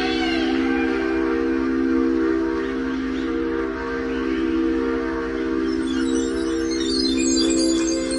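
Electronic music from synthesizers: a sustained chord held steady throughout, with a scatter of short, high-pitched notes coming in about six seconds in.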